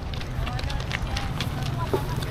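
Faint voices of people talking nearby over a steady low rumble.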